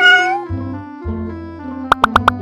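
A cat meowing once, a short bending call in the first half second, over light background music. Near the end come a few quick rising blips.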